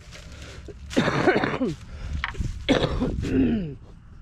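A woman coughing in two bouts, about a second in and again near three seconds, a cough brought on by COVID.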